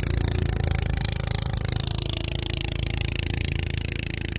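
Small boat engine running steadily at an even speed, heard from on board, with wind on the microphone.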